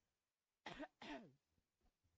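Near silence, broken about a third of the way in by a brief, faint wordless vocal sound from a man, with a falling pitch, less than a second long.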